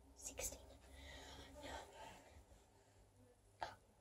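Near silence with a few faint, short whispered sounds from a girl's voice.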